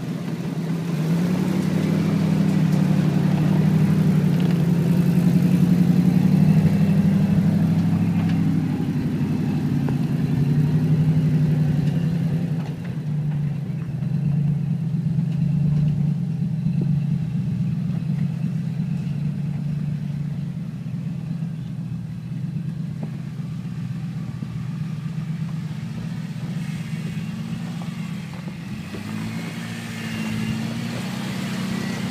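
Off-road vehicle engines, a Ford pickup and a lifted Jeep Wrangler, running at low revs as they crawl over a steep, rocky dirt trail. The engine note swells over the first dozen seconds, then eases to a lower, steadier level.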